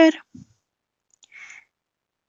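A woman's narrating voice ends a word, then a small mouth click and a short soft breath, with dead silence between them.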